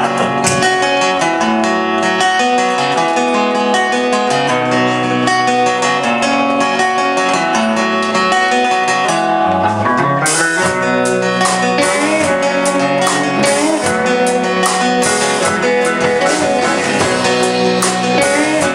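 A rock band's instrumental intro: strummed guitars over a bass line with no vocals. About halfway through it turns fuller and more driving, with sharp, regular hits over the chords.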